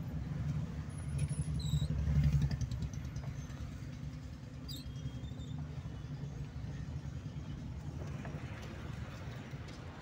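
Car running in city traffic, heard from inside the cabin: a steady low engine and road rumble that swells briefly about two seconds in, with a few faint high chirps.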